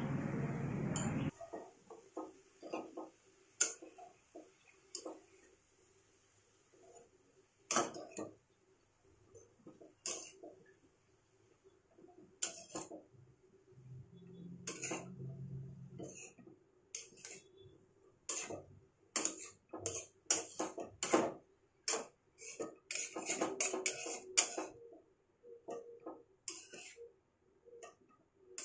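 Metal spatula scraping and knocking against a metal kadai as a dry leafy radish sabzi is stirred and mixed. The scrapes and clinks come irregularly and grow thicker past the middle.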